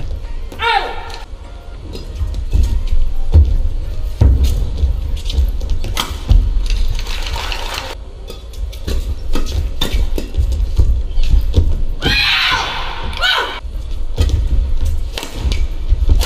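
Badminton rally in a large hall: sharp cracks of rackets hitting the shuttlecock and thuds of players' feet on the court mat, with high shoe squeaks or a shout about a second in and again around three-quarters of the way through.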